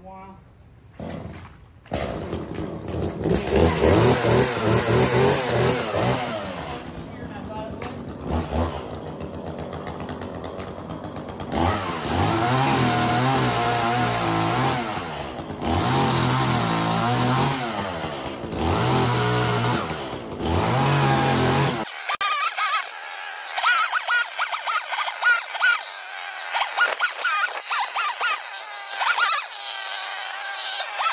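Chainsaw cutting up a fallen tree limb, its engine speed rising and falling over repeated cuts. About twenty seconds in it cuts off abruptly and a thinner, wavering sound with no low end follows.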